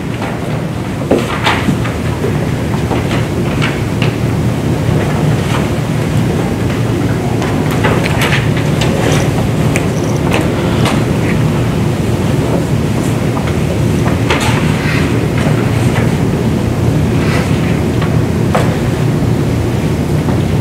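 A steady low rumble of room noise, with scattered short rustles and knocks from paper being handled and people moving about the room.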